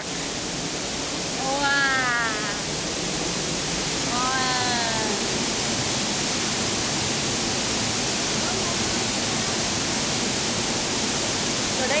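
A waterfall rushing steadily.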